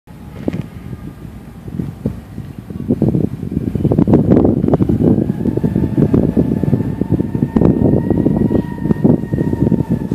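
Wind buffeting the microphone, growing louder about three seconds in, over an approaching diesel freight train. From about five seconds in a faint steady high tone from the train carries through.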